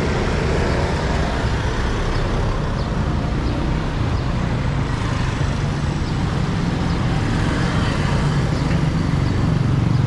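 Street traffic: motorcycles and cars passing close by, with a steady engine hum that grows a little louder near the end.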